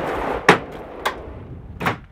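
Heavy-duty slide-out cargo drawer rolling in on its rails, then a loud clunk about half a second in as it shuts, followed by two lighter knocks.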